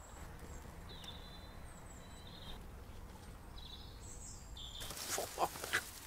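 Faint outdoor birdsong: a few short, high whistled notes over a steady low background rumble. Near the end a rustle starts as flowering sedge is handled, shedding pollen.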